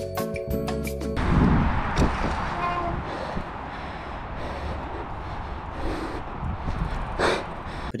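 Background music cuts off about a second in, giving way to the raw sound of a mountain bike ridden down a dirt jump line: steady wind rush and trail noise on a rider-mounted camera's microphone, loudest just after the music stops, with a short burst near the end.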